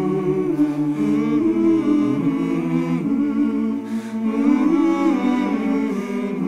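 Small mixed-voice choir humming wordless held chords a capella, the harmony moving to a new chord every second or so.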